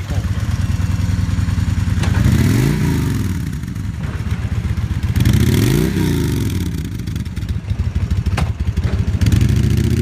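2006 Kawasaki Vulcan 2000 Classic LT's big V-twin engine running and revved twice, each rev rising and falling back to idle, then held at a higher, steadier speed near the end.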